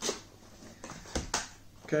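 Cardboard camera box being opened by hand: a few short taps and scrapes as the lid flap is pulled open.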